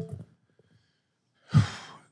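A man sighing: one short, loud breathy exhale about one and a half seconds in, after a brief pause.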